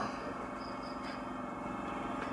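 A steady low hum of background noise, with faint steady tones in it and no speech.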